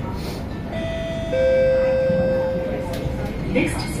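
SMRT C151A train's traction equipment whining with steady tones as the train starts to pull away, over the rumble of the car. The whine comes in about a second in, drops to a lower, louder tone and fades out near the end.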